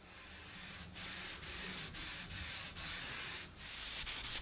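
Stockinette cloth rubbing beeswax into the cut edge of a plywood shelf: a faint scratchy rubbing in back-and-forth strokes, about two a second.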